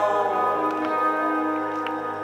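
Live band music in a concert hall: a slow ballad, with guitar chords ringing and held notes sustaining.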